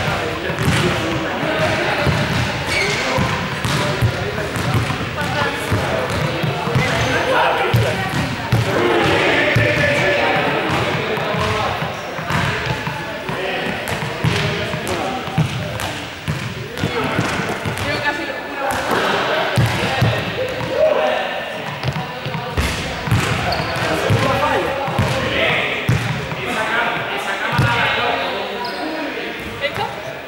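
A ball bouncing repeatedly on a sports-hall floor, with indistinct chatter of several voices in the hall.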